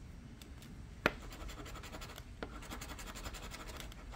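A coin scratching the coating off a scratch-off lottery ticket's caller's card, in rapid short scraping strokes that start with a click about a second in.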